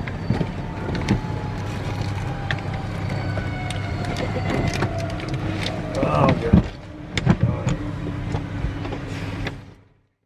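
Steady low hum in the cabin of a parked business jet after engine shutdown, with scattered clicks and knocks and a faint whine that slowly falls in pitch. There is a short voice-like sound about six seconds in, and the sound fades out at the very end.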